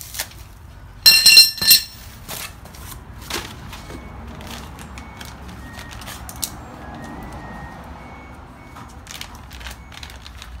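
Parts being unpacked by hand: plastic bags and cardboard rustling and knocking, with a loud, high-pitched squeal lasting under a second about a second in.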